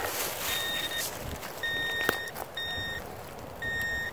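Handheld metal-detecting pinpointer beeping in a steady high tone, four uneven beeps of about half a second each, as it is worked through loose soil over a metal target. Soft scraping of dirt runs underneath, with one sharp click about two seconds in.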